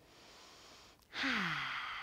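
A woman taking a deep breath: a faint inhale, then about a second in, a long audible sighing exhale whose voice slides down in pitch.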